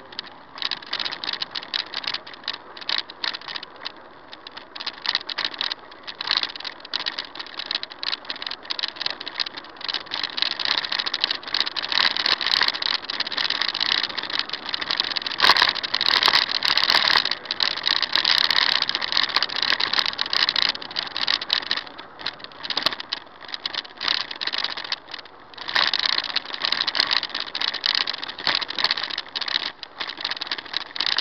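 Continuous irregular rattling and clattering over road noise, as from a camera shaking in its mount on a moving vehicle. It is loudest and busiest in the middle stretch.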